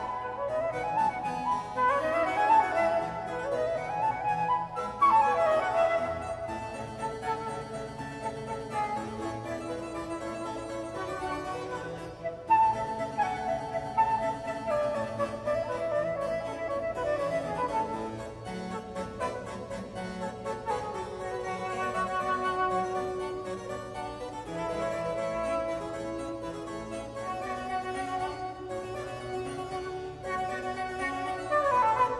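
A metal transverse flute and a harpsichord playing a classical duet. Quick rising runs in the first few seconds give way to a slower melody with held notes.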